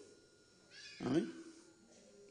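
A quick breath, then about a second in a single short vocal cry that rises and falls in pitch.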